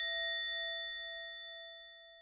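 A single bell-like ding, an editing sound effect, rings out and slowly fades away.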